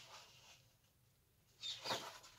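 Faint rustling of a folded paper instruction sheet being moved by hand, fading out within the first half-second, then near silence until a short rustle near the end.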